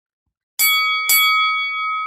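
Bell-ding sound effect, struck twice about half a second apart, the ring carrying on and slowly fading.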